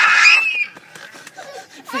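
Excited high-pitched voices of a woman and a toddler: a loud shriek in the first half second that trails off, then quieter scuffling close to the microphone, with a shout starting again right at the end.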